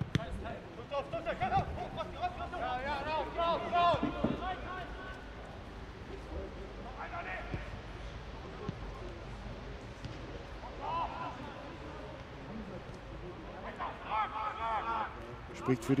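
Footballers shouting calls to each other across the pitch in short bursts, with the occasional thud of the ball being kicked, over a low steady stadium background.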